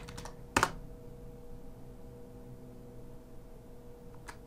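Computer keyboard keystrokes: a few light key taps at the start, then one sharper keystroke about half a second in, as a command is typed and entered. A faint steady hum runs underneath.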